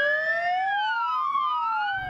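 Ambulance siren wailing: two pitches sweep at once, one rising while the other falls, crossing about halfway through.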